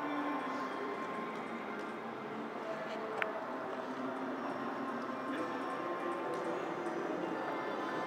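Casino floor ambience: a steady din of background chatter mixed with the electronic tones and jingles of slot machines, with one sharp click about three seconds in.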